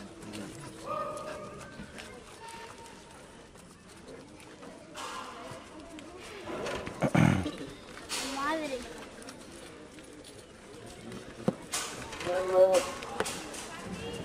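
Tiger growling once, a loud low growl about seven seconds in, amid people talking in the background.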